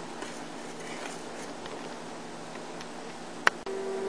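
Pot of egg noodles boiling on a stovetop as it is stirred: an even bubbling hiss. A sharp click comes about three and a half seconds in, after which a steady hum sets in.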